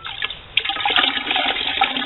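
A sponge being worked in a plastic bucket of water and squeezed out, water splashing and streaming back into the bucket, starting about half a second in.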